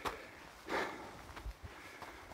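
A walker's footsteps on a snowy path, with a few light crunching steps and a soft breath about three-quarters of a second in.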